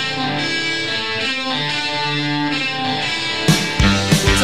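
Psychedelic rock band music: an instrumental break of sustained, ringing electric guitar notes with no drums, until the drums come back in with a hit about three and a half seconds in.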